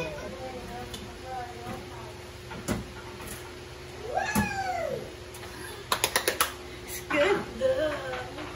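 Hinged fluted-glass doors of a bamboo dish cabinet being closed by hand: a knock, then a quick run of about five sharp clicks as a door shuts. A short rising-and-falling cry in the middle and a brief voice sound near the end.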